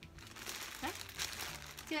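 Clear plastic packaging bag crinkling irregularly as it is handled and turned in the hands.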